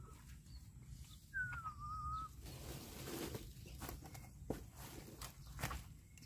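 A faint bird call about a second and a half in: one whistled note that falls and then levels off. In the second half come a few scuffs and taps of footsteps on loose dirt.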